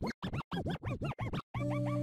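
DJ record scratching: a rapid run of short back-and-forth scratches with swooping pitch. About one and a half seconds in, the scratches stop and the opening chords of a hip hop track begin.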